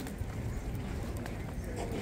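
Outdoor street-fair crowd ambience: footsteps on asphalt and scattered voices of passers-by over a steady low rumble.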